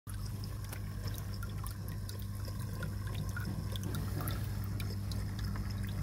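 Water in a turtle tank's filter system trickling and dripping steadily over a constant low hum.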